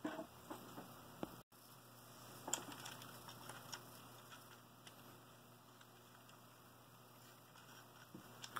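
Near silence with a few faint, scattered clicks and rattles of plastic LEGO parts as the brick-built tank model is handled, over a low steady hum.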